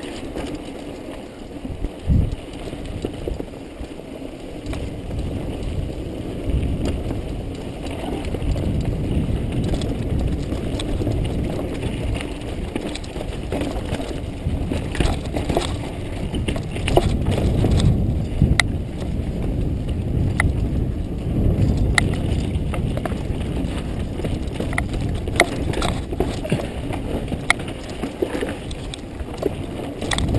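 Mountain bike descending rocky singletrack, recorded on a GoPro on the bike or rider: a steady low rumble of tyres over dirt and rock, broken by many sharp clicks and rattles of the chain and frame over bumps.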